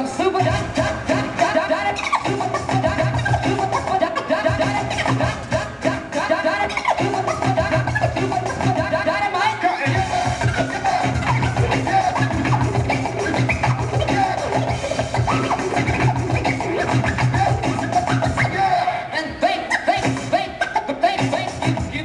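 Turntablist scratching records on turntables and a mixer over a bass-heavy hip-hop beat, quick wiggling scratch sounds cut in and out over the rhythm. The beat drops out briefly about ten seconds in, then comes back.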